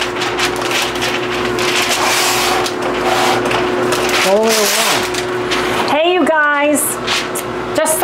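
Parchment paper rustling and crinkling as a sheet is pulled from its box and smoothed out on a baking sheet, over a steady low hum. Two short bits of voice come in around the middle.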